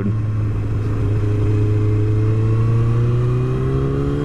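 Honda CBR954RR Fireblade's inline-four engine running steadily as the sportbike is ridden, its note rising slowly from about a second in as it accelerates gently, with wind rush underneath.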